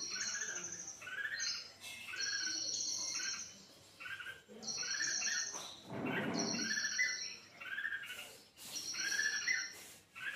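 Bulbul calling in a run of short chirping notes, several a second, with a higher buzzy trill coming back about every couple of seconds.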